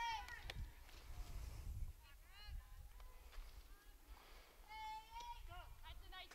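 Faint, distant high-pitched shouts and chatter from players on a softball field: a few drawn-out calls near the start and about two and five seconds in.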